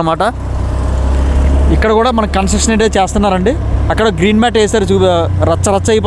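Motorbike engine running while riding, with wind noise on the microphone: a steady low drone that grows louder over the first two seconds. A man talks over it from about two seconds in.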